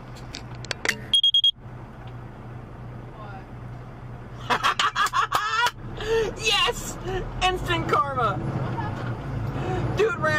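Vehicle engine idling with a steady low drone, with a short high electronic beep about a second in. From about halfway through, voices talking and laughing over it.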